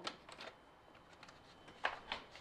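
Quiet workshop with a few faint clicks of hand tools being picked up and handled on a workbench, and one sharper click near the end.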